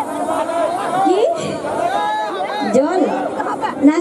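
Overlapping chatter of several voices talking at once, with no music.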